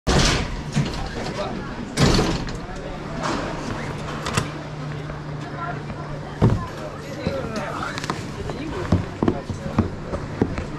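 Indistinct voices with scattered knocks and clunks and a steady low hum.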